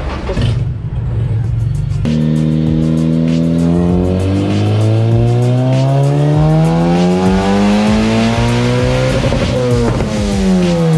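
Turbocharged Honda K24 four-cylinder engine making a dyno pull with its boost turned up past nine psi. After a rough first couple of seconds, the engine note climbs steadily through the revs for about seven seconds, then drops quickly as the throttle is lifted near the end.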